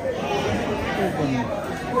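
Crowd chatter: many people talking over one another in a large, busy hall.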